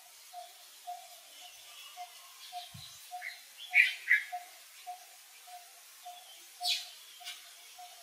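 Birds calling: one bird repeats a single note about twice a second, and a few short, louder high chirps come about four seconds in and again near seven seconds.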